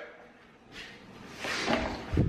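Soft knocks and rustling of a plastic Ninja blender jar and its top being handled, louder toward the end.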